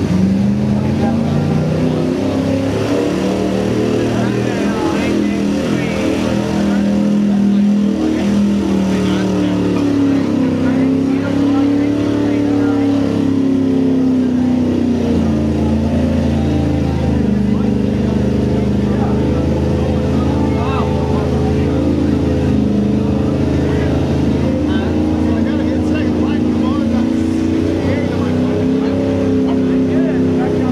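Pickup truck engine running hard in a mud pit, its revs rising and falling over and over as the driver works the throttle to push through the mud.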